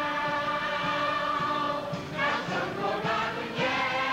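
Mixed chorus of men's and women's voices singing together in a stage musical's ensemble number. A long held chord gives way about two seconds in to a new sung phrase.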